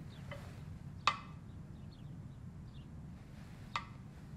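Two short, light clicks of kitchenware being handled, a sharper one about a second in and a fainter one near the end, over quiet room tone.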